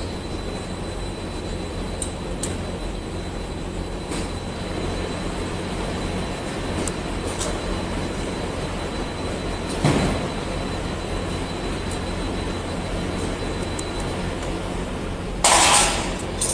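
Cable extruder line running: a steady mechanical hum with a faint high whine, a short knock about ten seconds in, and a brief loud burst of noise near the end.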